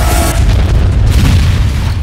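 Deep cinematic boom hitting at the start and trailing into a heavy low rumble, trailer sound design layered over the score.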